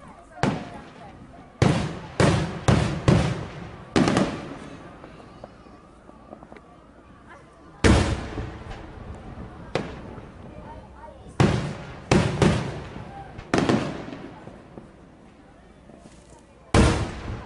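Aerial firework shells bursting overhead: sharp booms, each trailing off in a rolling echo. They come in a quick cluster of four early on, then single loud reports, and another rapid group near the end.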